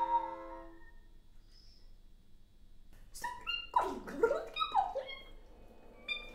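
Contemporary music-theatre sounds: a held sung note fades out, and after a short pause several wailing pitched tones slide down and up together, overlapping, for about two seconds.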